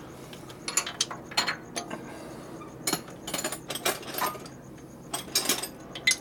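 Steel hand tools at work on a 1964 Harley-Davidson Sportster ironhead's cylinder head bolts: a socket wrench, sockets and extensions giving irregular metallic clicks and clinks.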